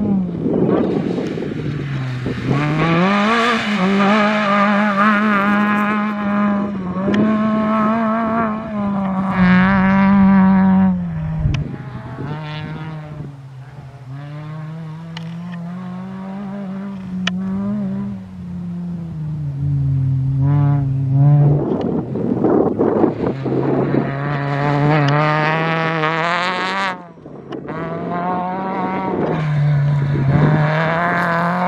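Rally car engines revving hard as the cars pass one after another, the engine note climbing and then dropping with each gear change.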